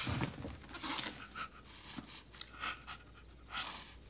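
An elderly man sobbing: a few short, shaky, breathy sobs.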